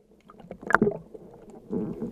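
Underwater sounds just after a speargun shot: one sharp knock about three-quarters of a second in, then low, busy water noise near the end.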